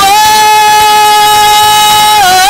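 A woman singing one long, steady high note into a microphone, loud and amplified.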